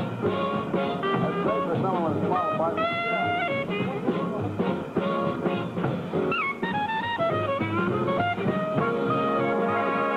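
Jazz big band playing swing, a clarinet leading with running phrases and slurred bends over the brass, saxophones and rhythm section.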